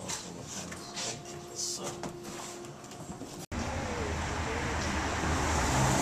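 Quiet indoor room tone with a faint steady hum and a few light handling ticks. It cuts off abruptly partway through to steady outdoor traffic noise with a low rumble, which grows louder toward the end.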